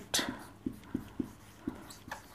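Marker pen writing on a whiteboard: a few faint, short, irregularly spaced strokes and taps.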